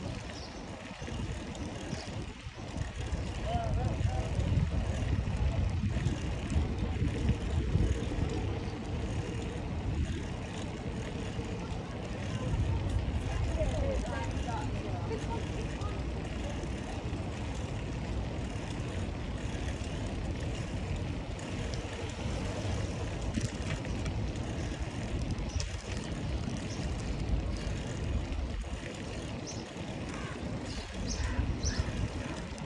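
Wind buffeting the microphone and bicycle tyres rolling over brick paving, a rough low rumble that swells a few seconds in and stays steady.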